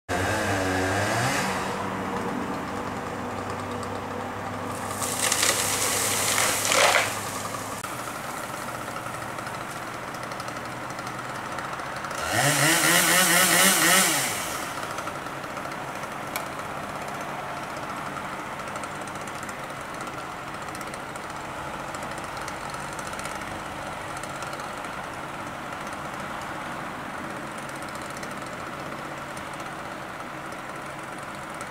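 Two-stroke chainsaw idling, revved hard in three short bursts: at the very start, about five seconds in, and about twelve seconds in, the last with a rising whine as it cuts through the spruce trunk. After that it idles steadily.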